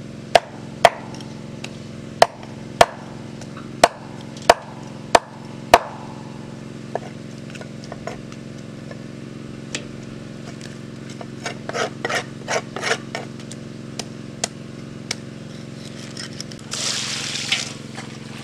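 Large knife chopping through a whole fish on a hard slab: eight sharp strikes in the first six seconds, then a quicker run of lighter cuts and taps. Near the end, a short splash of water pouring over the fish pieces in a bowl.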